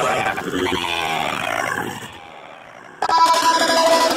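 Slowed-down, deep-pitched vocal from a song, with the backing beat dropped out. The voice fades about two seconds in, and the music comes back suddenly about three seconds in.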